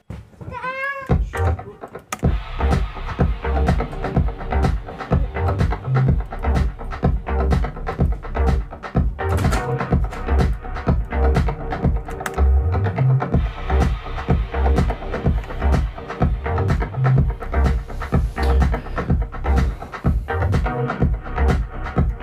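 A deep house track in progress playing back from Ableton Live: pulsing kick and bass under held chords and ticking hi-hats, with no talk over it. A short swooping pitched sound comes first, and the groove starts about a second in.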